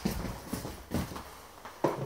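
A few short knocks at uneven spacing, about four in two seconds, with faint background between them.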